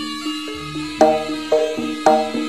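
Javanese gamelan-style traditional music: a melody of pitched struck notes stepping about four times a second over drums, with louder struck accents about a second apart.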